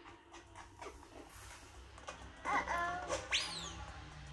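A seven-month-old baby vocalizing a little past halfway: a short wavering whine, then a brief high-pitched squeal that rises and falls.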